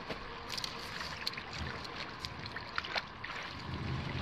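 Scattered light clicks and snaps of dry twigs and brush as a person moves about on the ground, over faint wind. A short low rumble of wind on the microphone near the end.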